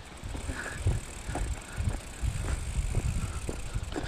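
Mountain bike being walked along a paved path: scattered clicks and rattles over a low rumble.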